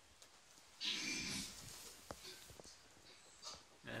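A person walking down carpeted stairs: a brief breathy rush of noise about a second in, then a few faint soft knocks.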